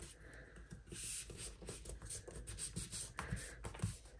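Faint rustling and rubbing of a folded paper napkin as hands press and smooth it flat on a countertop, with a few soft scattered clicks.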